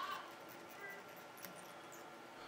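Quiet room tone with faint handling of fly-tying thread and tools at the vise: a brief thin squeak a little under a second in and a light tick about half a second later.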